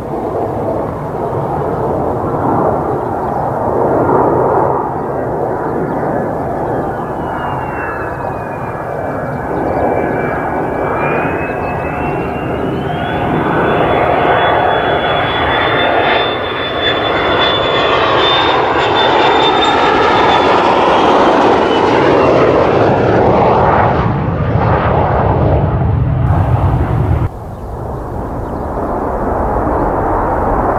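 Mitsubishi F-2B fighter's single F110 turbofan engine on landing approach with gear down: a loud jet roar with a high whine that dips, climbs and falls again as the jet comes closer. About three seconds before the end the sound drops suddenly to a quieter, lower rumble from a more distant F-2B.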